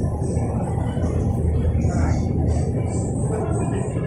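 Shopping-mall ambience: people's voices in the background over a steady low rumble.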